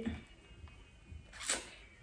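A wrapped pack of plastic plates being handled, with one brief rustle of the packaging about one and a half seconds in.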